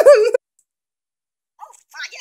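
A high, wavering voice that swoops up and down in pitch, stopping abruptly about a third of a second in. A few faint short sounds follow near the end.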